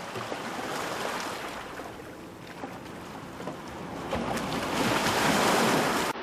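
Sea waves washing in, with wind, as a steady rush that swells louder over the last couple of seconds.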